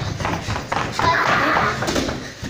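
Quick, irregular running footsteps of several small children sprinting across a carpeted hall floor, with thuds as they reach the gym mats. Children's voices rise over the footsteps from about a second in.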